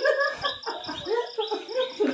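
Crickets chirping in a steady, even pulse of about four high chirps a second, with faint sliding voice-like sounds underneath.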